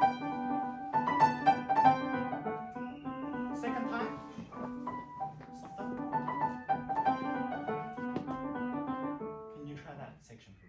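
Grand piano played: a melody over a steadily repeating broken-chord accompaniment figure in the lower register. The playing eases briefly about five seconds in and tapers off near the end.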